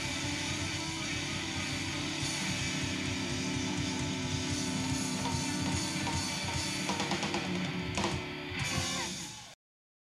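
Electric blues band playing live: electric guitar over bass and drums. The music cuts off abruptly near the end.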